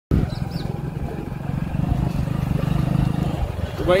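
Motorcycle engine idling close by with a steady low throb.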